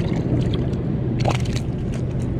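Water sloshing around a wading angler, with a few short splashes as a small speckled trout is held up on the lure, over a steady low hum.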